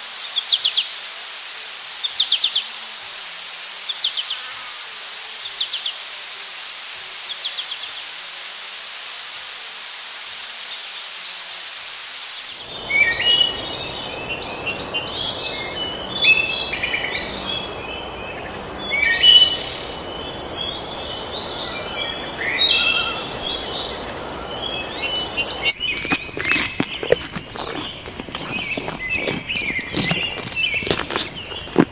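Birds chirping over a steady high insect drone in forest. About 13 seconds in, the sound jumps to the rumble and wind noise of an open jeep driving, with birds calling loudly over it. Rattles and knocks come in near the end.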